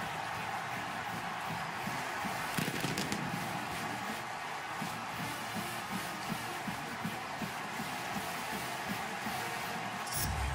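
Large stadium crowd cheering steadily for a touchdown, with band music playing underneath.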